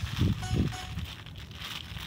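Clear plastic wrap around a papaya air layer being handled and crinkled by hand as it is closed back up, with a few low thumps in the first second.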